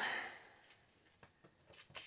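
Paper and stamping tools being handled on a craft table: a brief rustle of paper at the start, then a few faint light taps, and more paper rustle near the end as the sheet is lifted.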